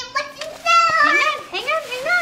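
A toddler's high-pitched voice chattering, no clear words.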